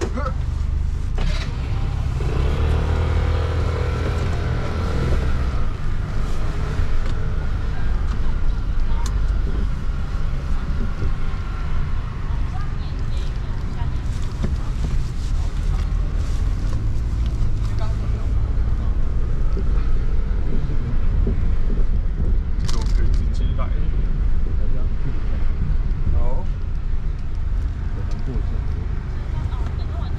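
Steady low rumble of engine and tyre noise heard from inside a moving car's cabin, with a few faint ticks and knocks.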